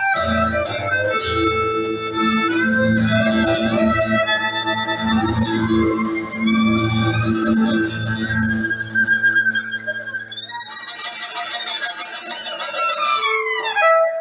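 Live folk band of acoustic guitar, violin and keyboard playing the closing bars of a song. About ten seconds in the low end drops out, leaving higher lines that slide downward in pitch near the end.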